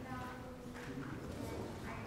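Indistinct talking by people in a meeting room, with no clear words.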